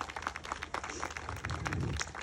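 Scattered applause from a crowd: many irregular, overlapping hand claps at moderate level.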